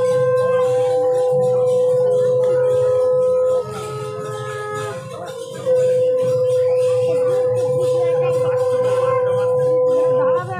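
A conch shell (shankha) blown in long, steady, loud notes: one held blast that breaks off about a third of the way in, a quieter gap of about two seconds, then a second long blast that runs to the end.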